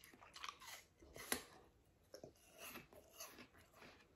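A person biting and chewing a slice of raw apple: quiet, irregular crunches, the loudest about a second in.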